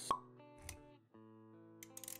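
Intro music with sound effects: a sharp plop just after the start, a softer low thump a little later, then held musical notes.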